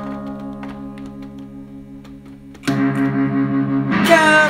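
Instrumental passage of a song: an effects-laden electric guitar chord rings on with a regular pulsing and slowly fades. A new, louder chord comes in about two-thirds of the way through.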